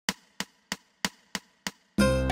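Six sharp clicks, evenly spaced at about three a second, each dying away quickly.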